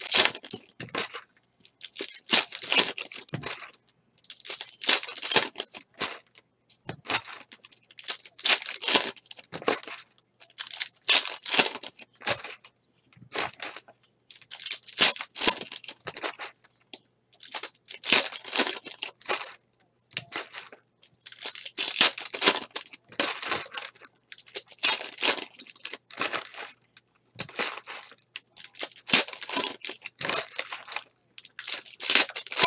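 Crinkling of trading-card pack wrappers and clear plastic card sleeves as they are handled, in short rustles about once a second.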